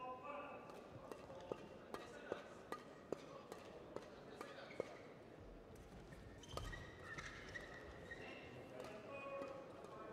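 Badminton rally: racket strings striking a shuttlecock in a quick exchange, a sharp crack roughly every half second for about five seconds, then a duller thud a little past the middle.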